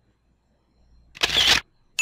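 A short camera-shutter sound effect, part of a presentation slide animation, about a second in, after near silence.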